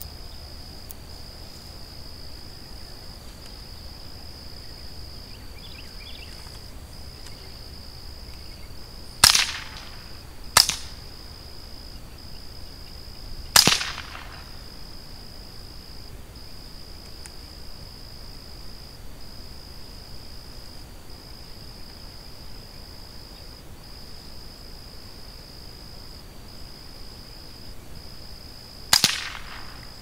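Four .22 rimfire rifle shots: three sharp cracks fairly close together about a third of the way in, the last of them three seconds after the second, and a fourth near the end. Each shot is short, with a brief ringing tail.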